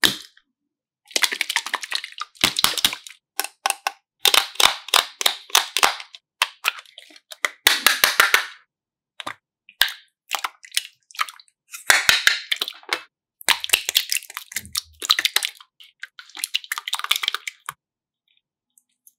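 Slime squeezed and pressed by hand, giving crackling, popping clicks in about six bursts of one to two seconds with short pauses between.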